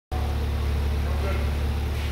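2018 Kia Stinger's 2.0-litre turbocharged four-cylinder engine idling steadily, with a low, rapidly pulsing hum.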